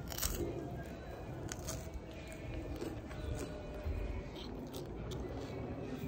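Someone biting and chewing a sandwich close to the microphone: scattered short crunchy clicks over a steady low rumble.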